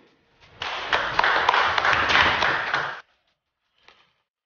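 Audience applauding at the close of a speech, starting about half a second in and cut off abruptly a second before the end, with a faint single tap just before the end.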